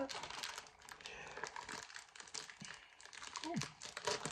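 Scissors cutting open a plastic snack-cracker bag, the film crinkling and crackling in a faint run of small clicks.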